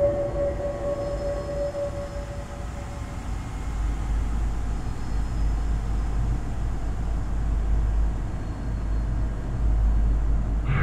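A deep, low rumbling drone of ambient film sound design, growing stronger about three seconds in, while a single ringing tone dies away over the first few seconds.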